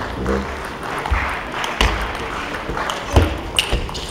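Table tennis rally: a celluloid ball clicking off the bats and the table, a string of sharp knocks at irregular intervals.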